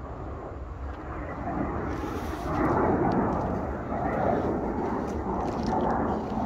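Wind buffeting the microphone, swelling louder about two and a half seconds in, over a steady low rumble.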